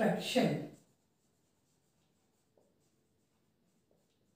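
A marker writing on a whiteboard, very faint, with a couple of light taps of the tip against the board, after a woman's voice in the first second.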